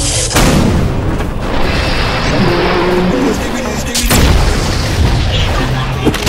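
Animation battle sound effects: heavy booms, one about half a second in and another about four seconds in, over a continuous loud rumble and music.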